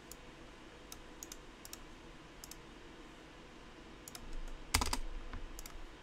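Computer keyboard and clicks at a desk: a few isolated clicks spaced out at first, then a quick run of key presses about four seconds in, including one heavier knock.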